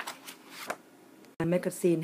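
A glossy magazine being handled and laid down, giving a few short paper rustles and taps in the first second or so.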